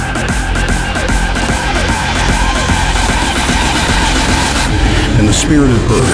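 Hardstyle track in a build-up: a swelling, screeching noise effect over the music, ending in a falling pitch sweep just before the heavy kick drum comes back in.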